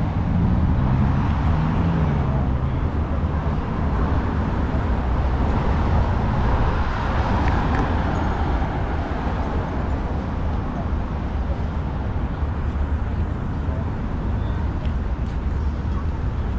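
Road traffic at a city intersection: cars and a shuttle bus driving through with a steady low rumble, one engine note audible near the start and the traffic swelling briefly around the middle.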